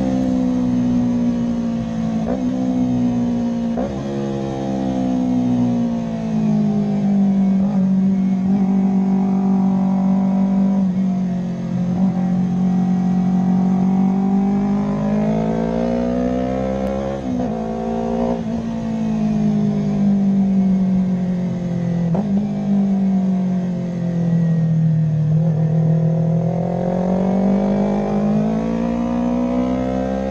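Yamaha YZF-R3's parallel-twin engine heard on board at track speed. Its note slowly rises and falls through the corners, with a few brief breaks in the note, over wind rush.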